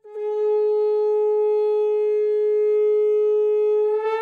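A conch shell (shankha) blown in one long, steady note that starts sharply and holds level, with a rich, horn-like ring of overtones.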